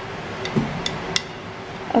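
Three light, sharp clinks of small hard objects knocking together, spread across about a second, over faint steady hiss.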